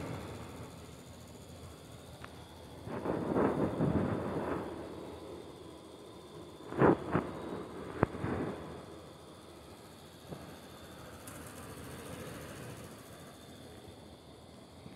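Handling noise from a handheld phone: low rustling that swells a few seconds in, then two short knocks about seven seconds in and a single click a second later.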